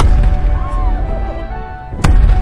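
Cannon firing: a sharp boom right at the start, with a deep rumble trailing off over the next two seconds, and another boom starting just at the end. Background music runs underneath.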